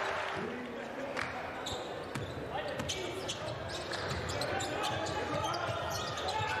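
Hall ambience at a basketball game: a steady hum of spectator voices with scattered sharp knocks of a basketball bouncing on the hardwood court.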